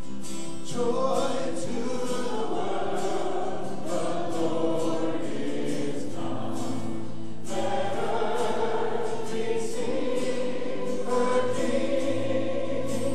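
A church congregation and worship team singing a worship song together, with acoustic guitar strumming underneath; the voices come in about a second in.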